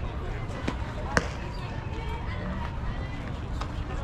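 Faint chatter of players and spectators around a softball field, with a single sharp pop about a second in, as a softball smacks into a leather fielder's glove.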